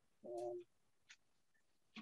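Near silence with one short, low, steady hum about a quarter second in: a person's brief "mm" over a video-call microphone.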